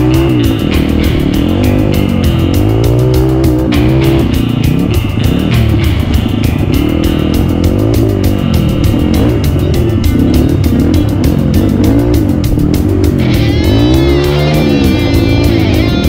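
Off-road motorcycle engine revving up and down again and again as it is ridden over rough ground, mixed with loud background music with a steady beat.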